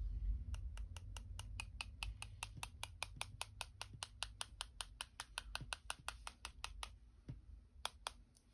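Quick, even taps of a paintbrush being knocked to flick splatters of gold watercolour, about five taps a second, slowing to a couple of last taps near the end.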